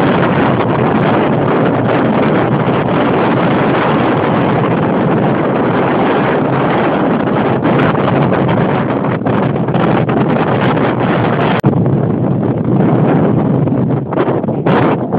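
Strong wind buffeting the microphone, a loud, steady rushing noise, with a brief dropout about two-thirds of the way through.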